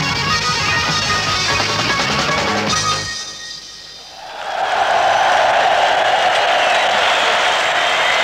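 A live rock band with drum kit and guitar plays until about three seconds in, then stops. After a short lull, a large crowd's cheering and applause swells up and carries on loudly.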